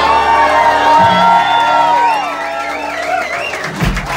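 A live band's final notes ringing out, with an electric guitar bending and wavering notes over the fading chord. Audience cheering and whoops begin to come in near the end.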